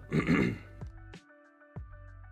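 A man clears his throat once, briefly, near the start, over quiet background music.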